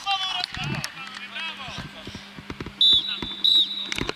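Referee's whistle blown in two short, loud blasts in the second half, as the goal is given, after players shout. Scattered knocks of play and a steady low hum run underneath.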